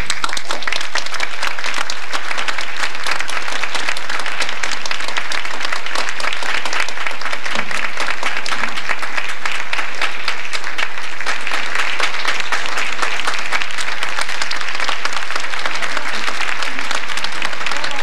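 Audience applauding: dense, even clapping that starts abruptly and holds steady.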